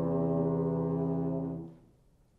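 Euphonium and tuba duo holding a long, low sustained brass note that stops about a second and a half in.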